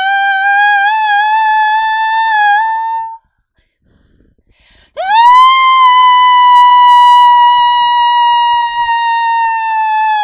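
A woman singing long, loud, high held notes without words. The first note wavers slightly and creeps upward, then breaks off about three seconds in. After a short silence a second, louder note scoops up, holds steady and sags down at the end.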